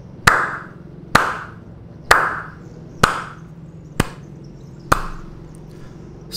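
Slow, evenly spaced hand claps, six in all, about one a second, each with a short echo, over a low steady hum.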